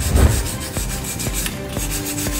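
Wire brush scrubbing rust off a car's wheel hub face in repeated back-and-forth strokes, metal bristles rasping on steel.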